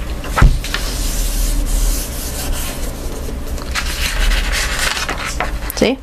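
A hand rubbing steadily over a folded sheet of plain computer printer paper, spreading and squishing ink along the inside of the fold to make an inkblot. A sharp knock about half a second in.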